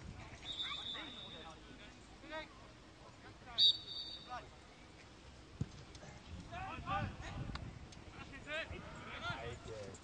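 Referee's whistle blown twice: a blast of about a second half a second in, then a shorter, louder one about three and a half seconds in. Players call and shout across the pitch, most of it in the second half.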